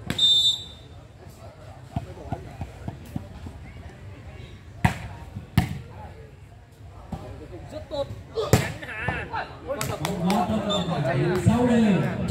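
A short whistle right at the start, then a volleyball struck sharply a few times during a rally on a sand court, about five seconds in, half a second later, and twice more near the end.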